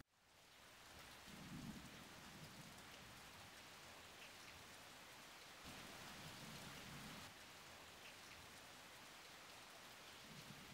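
Near silence: a faint, even outdoor hiss, with soft low rumbles about a second and a half in and again around six to seven seconds.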